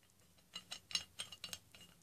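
A series of faint, irregular light clicks and taps from a large survival knife being handled.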